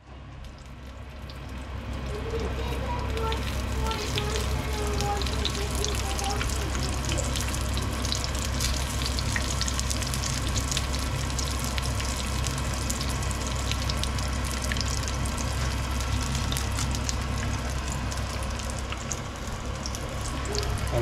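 Battered zucchini flowers stuffed with mozzarella and anchovy frying in hot oil in a pan: a steady crackling sizzle that swells over the first couple of seconds and then holds, with a low steady hum underneath.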